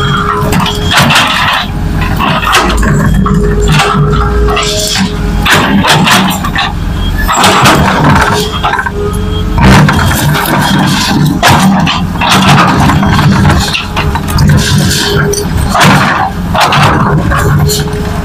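Diesel engines of a dump truck and an excavator running, with music playing over them.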